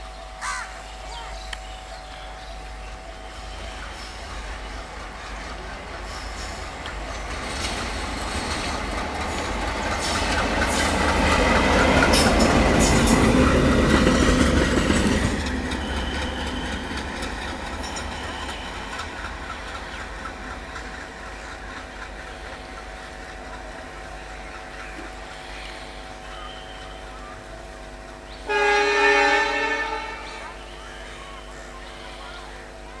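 WDM-3D diesel locomotive passing close by: its engine and wheels build up to a loud peak of clattering over the rail joints about halfway through, then fade as it runs away. Near the end a locomotive horn gives one blast of about a second and a half.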